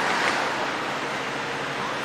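Steady rushing background noise with no clear tone or rhythm.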